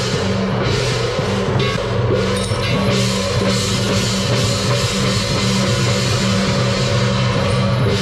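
Taiwanese temple procession percussion: drums, hand gongs and cymbals played together in a loud, continuous din, with a steady low drone underneath.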